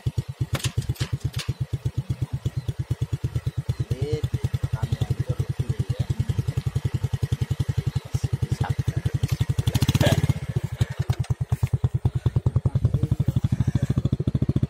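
A small engine running steadily, a fast, even low chugging, briefly louder about ten seconds in.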